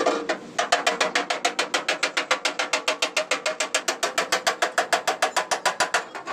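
Rapid, evenly spaced metallic tapping, about nine strikes a second, with a ringing note. It begins with a single sharp knock and runs steadily for about five seconds.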